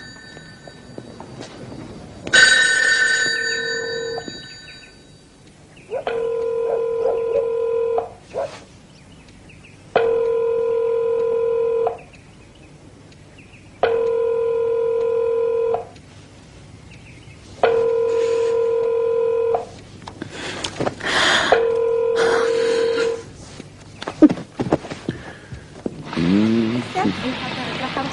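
Electronic telephone ringer ringing five times, each ring a steady buzzing tone about two seconds long with two-second pauses between. A brief loud sound comes about two seconds in, before the first ring.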